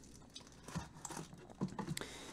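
Faint, irregular rustling and small clicks of a small cardboard box being opened by hand and its plastic-wrapped contents pulled out.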